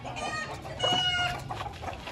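Aseel hen making a racket, agitated: two loud, drawn-out calls, a short one at the start and a longer one just under a second in.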